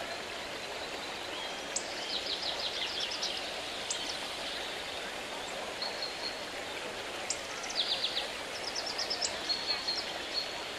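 Steady rush of running water with small birds chirping over it in short, quick trills, a cluster of them about two seconds in and several more near the end.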